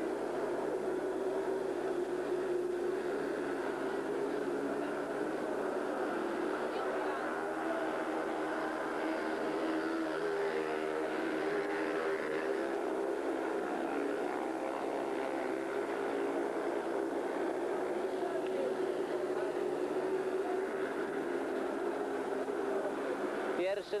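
Several speedway motorcycles racing, their single-cylinder engines running continuously at high revs through the laps.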